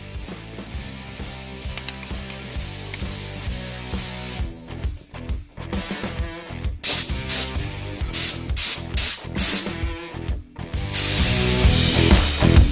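Air-fed applicator gun spraying Upol Raptor bed liner in several short hissing bursts from about seven seconds in, then a longer continuous burst near the end. Background music with guitar plays throughout.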